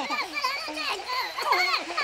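High-pitched gibberish chatter from cartoon clay characters, the voice swooping rapidly up and down in pitch.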